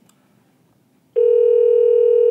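Ringback tone from an Avaya 1416 desk phone: near silence, then about a second in a single steady tone lasting about two seconds. It is the sign that the dialled extension is ringing and has not yet answered.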